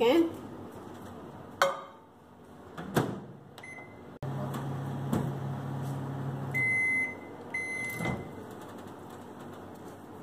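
Countertop microwave oven: a couple of knocks as the door is shut, a short keypad beep, then the oven running with a steady low hum for a few seconds. The hum stops and the oven gives two long beeps to signal the end of the cycle, then a click as the door is opened.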